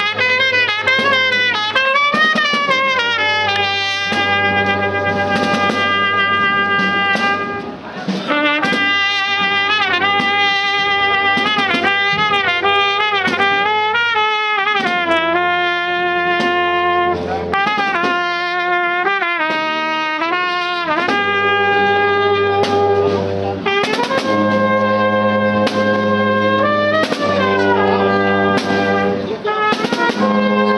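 Marching brass band of trumpets, flugelhorns, euphoniums and tubas, with snare and bass drums, playing a procession march: long held brass notes over steady drum beats.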